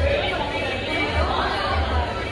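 Indistinct chatter of several people talking in a busy restaurant dining room.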